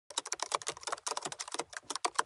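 Computer-keyboard typing sound effect: a quick, uneven run of key clicks, about a dozen a second, playing as the title text types itself onto the screen.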